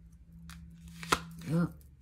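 Tarot cards being handled, with a light rustle and then one sharp snap of a card about a second in. A faint steady hum runs underneath.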